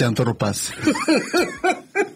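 A person laughing in a run of short pitched bursts, about three or four a second, after a moment of speech.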